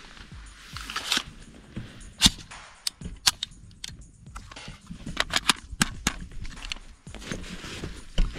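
Sharp metallic clicks and clacks from an AR-style rifle being handled and readied to fire, a series of single clicks with a quick cluster of several a little past halfway.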